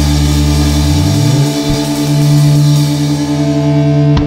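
Punk rock band holding a loud distorted chord near the song's end, with a low note sliding upward about a second in and no singing.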